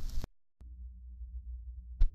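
The gap between two songs on an old recording. A loud burst of sound cuts off just after the start, then comes a moment of dead silence and a click. After that a low steady hum with faint regular pulses carries the lead-in before the next song begins.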